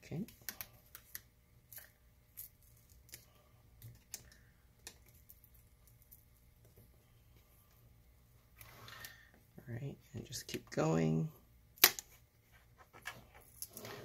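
Scattered light clicks and ticks of a plastic laptop screen bezel being worked loose with a pry tool, the bezel held down by clips and heavy adhesive. One sharp, louder click near the end.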